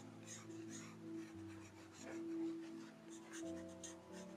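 Pencil strokes scratching on sketchbook paper, short and irregular, over soft background music of sustained chords that change every second or so.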